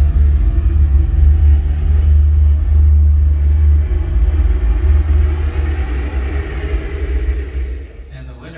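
Loud, deep bass rumble from a venue sound system, the low end of a dramatic music bed, fading out near the end.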